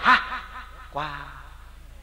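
A man chuckling briefly: a short laughing syllable at the start, then a second, lower one about a second in.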